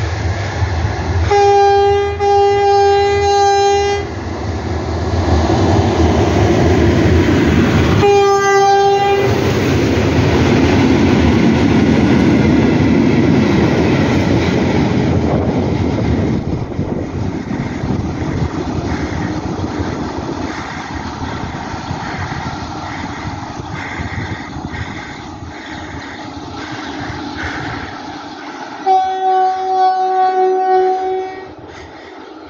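Horn of an engineering train: one long blast about a second in and a short one about 8 seconds in as it approaches, then the locomotive and its string of wagons running past close by, loud, with the wheels clacking in a regular rhythm over the rail joints as it draws away. A further horn blast starts near the end.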